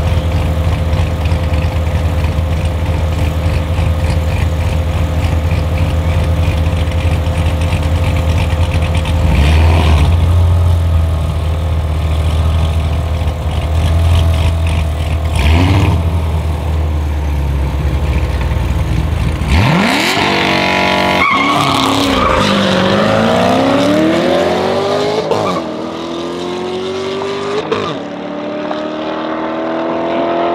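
Chevrolet Corvette C7 Stingray and McLaren 720S V8 engines idling side by side at a drag race start, with two short revs, then launching hard about twenty seconds in and accelerating away. The engine pitch climbs and drops back several times with quick upshifts as the cars pull into the distance.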